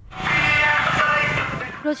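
Horn loudspeaker mounted on an auto-rickshaw blaring election campaigning, setting in just after the start and loud. A woman's voice begins narrating near the end.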